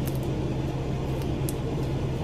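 Steady low hum of room noise with a few faint clicks as a small cosmetic jar is handled while she tries to open its lid.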